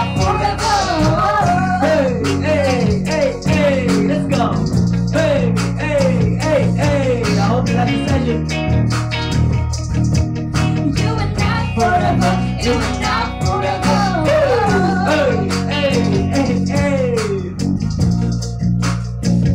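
Live band playing a song: electric guitar, bass, keyboard and drums under a sung melody that moves in short, repeated falling phrases.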